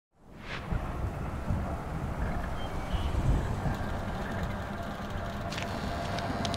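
A low rumbling noise with a hissy wash over it, fading in at the start and then holding steady.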